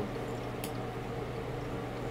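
A steady low electrical hum, with one faint click about two-thirds of a second in.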